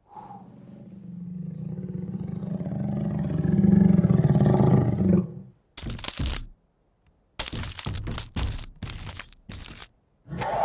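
A long, low, rough drawn-out sound swells and cuts off about five seconds in. Then glass cracks in a short burst and a quick run of sharp cracks through the last few seconds.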